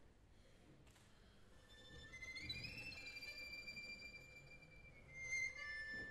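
Solo violin, bowed and unaccompanied, playing softly in a high register. About two seconds in a note slides up and is held, and a louder high note follows near the end.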